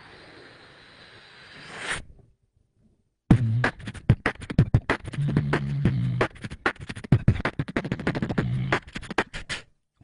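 Beatboxing into a close microphone: a hissing swell builds and cuts off suddenly about two seconds in, then after a second of silence a fast, dense pattern of clicks and snare-like hits over low hummed bass notes, which stops just before the end.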